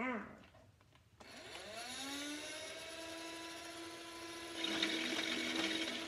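Motorized Nerf minigun's battery-driven motor spinning up about a second in, its whine rising in pitch and then holding steady, with a harsher rattle joining for the last second or so. It runs strong on fresh batteries.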